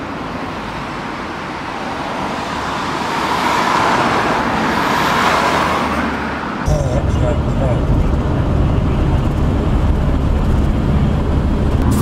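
Car on a road, its tyre and engine noise swelling for several seconds as it draws near. About halfway through the sound switches abruptly to the steady low rumble of road noise inside a car's cabin at motorway speed.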